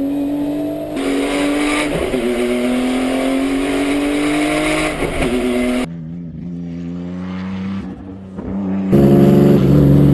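Calsonic Nissan Skyline GT-R (R32) race car's twin-turbo straight-six under hard acceleration, its note climbing steadily in pitch with a brief drop about two seconds in. It turns quieter and more distant about six seconds in, then loud and full from close to the exhaust near the end.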